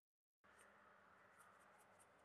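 Near silence: a brief dead-silent gap at an edit, then faint room tone with a few faint, light ticks in the second half.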